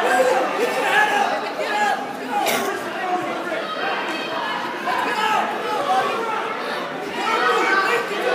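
Spectators' overlapping voices chattering in a large gymnasium, a steady hubbub of many people talking at once.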